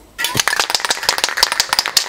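Aerosol spray can of clear protective lacquer being shaken: its mixing ball rattles in quick, fast clicks, starting suddenly just after the beginning. The shaking mixes the lacquer before spraying.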